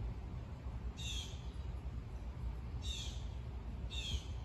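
A bird calling three times, each a short high call that falls in pitch: about a second in, at about three seconds, and near the end. A steady low rumble lies underneath.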